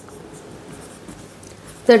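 Marker pen writing on a whiteboard: a faint, steady rubbing of the tip across the board as figures are written.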